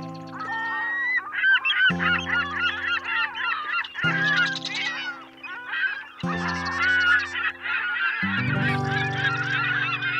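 A flock of birds calling, many short overlapping calls that bend in pitch, over background music of sustained chords that change about every two seconds.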